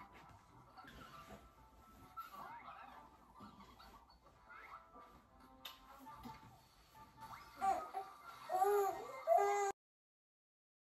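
An infant's short fussing cries, faint at first and louder for the last two seconds, each one rising and falling, then cutting off abruptly; soft music-like tones sit under them.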